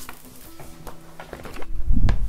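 Steel-string acoustic guitar being picked up and handled, its strings ringing with a few steady held notes amid small knocks and rustles. A heavy low thump near the end is the loudest sound.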